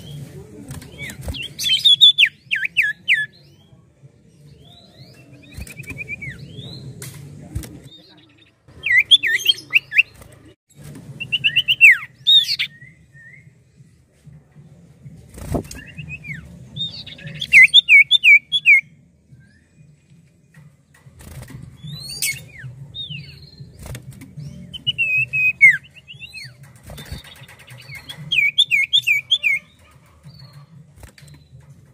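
Common iora (cipoh) singing: short bursts of quick, sharply falling whistled notes, repeated every two to four seconds. Between phrases there is a faint steady low hum and a few sharp clicks.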